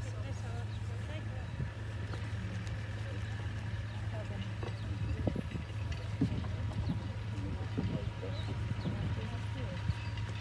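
Muffled, indistinct voices, only a mumble, under a steady low hum, with a few soft knocks around the middle. The audio here is poor: the sound is largely missing.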